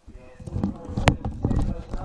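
Muffled, indistinct voices with low uneven knocking and a single sharp click about a second in.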